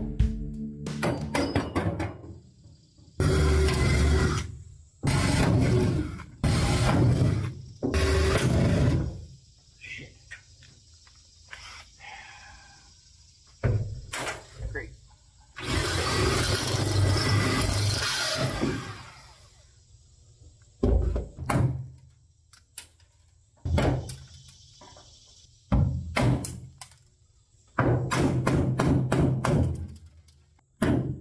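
Cordless drill drilling out aluminium rivets in a jon boat's hull, in several bursts of about a second each and one longer run of about three seconds. Near the end comes a quick series of sharp knocks.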